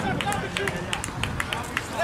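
Spectators' voices calling out, with scattered short, sharp clicks.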